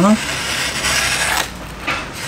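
Chef's knife slicing through a sheet of printer paper: a dry rasping rustle for about a second and a half, then a short second stroke near the end. The freshly sharpened edge still has a few nicks that catch during the cut.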